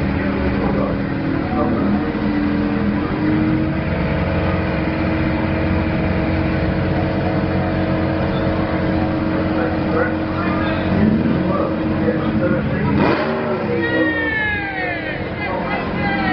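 VW Type 2 bus engine running at steady raised revs while staged on the drag strip start line, its pitch stepping up about two seconds in and then holding. Near the end comes a sharp crack followed by quickly falling whining tones.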